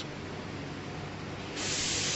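Packing machine with linear weighers running with a steady low hum. About one and a half seconds in, a loud, even hiss starts.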